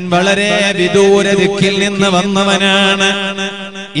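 A man chanting Arabic devotional verse in a drawn-out, melismatic voice, sliding between long held notes with a wavering vibrato. The chant dips briefly near the end and starts again.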